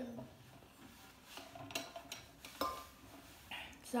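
Light clicks and clinks of tableware being handled at a table: three or four short taps, one with a brief ring, picked up close by the microphone.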